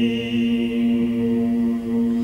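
Choral chant: voices holding one long, steady note.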